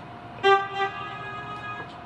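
Roland EA7 arranger keyboard sounding a sampled instrument tone: a note struck about half a second in that fades quickly, leaving a quieter held tone.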